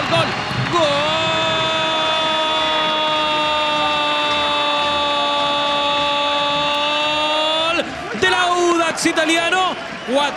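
A football commentator's goal cry in Spanish: rapid repeated "gol" that stretches into one long held "goool" on a steady pitch for about seven seconds, then breaks off into excited shouting near the end.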